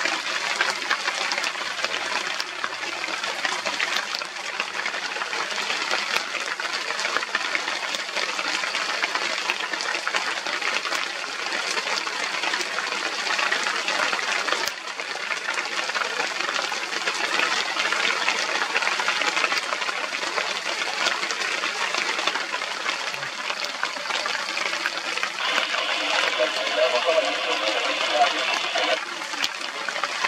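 Steady rain falling, an even, unbroken hiss. A brief pitched sound sits over it near the end.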